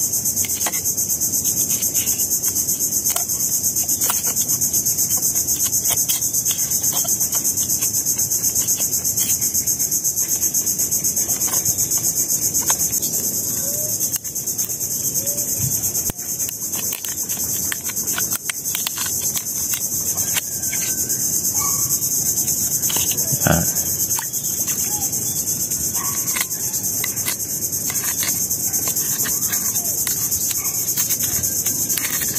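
Steady high-pitched insect chorus. It is joined by scattered light clicks of a metal knife blade tapping and prying at small oysters on a shell-crusted rock, with one louder knock about two-thirds of the way through.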